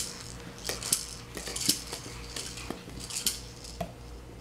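Hard plastic toys being handled: stacking rings and a plastic bin clicking and knocking together in a string of light, irregular taps.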